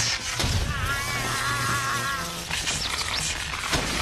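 Action film soundtrack: dramatic score mixed with electrical crackling and sparking from arcing electricity, with several sharp cracks.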